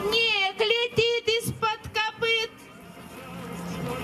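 A high voice singing short held phrases through a stage loudspeaker for about two and a half seconds, then a brief lull as a rising murmur of sound builds near the end.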